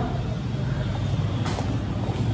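Steady low rumble with a faint hiss of background ambience, with no single distinct event.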